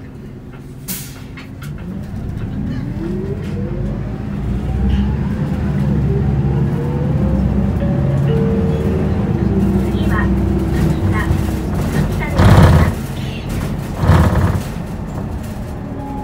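Isuzu Erga city bus heard from inside the cabin, pulling away under power: the four-cylinder diesel and driveline whine rise in pitch over several seconds as the rumble grows louder, then settle into a steady run. Near the end come two short, loud bursts of noise a second and a half apart.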